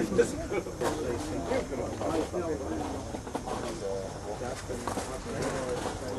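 Indistinct voices of players and onlookers talking at a distance, with a few faint scattered claps or knocks.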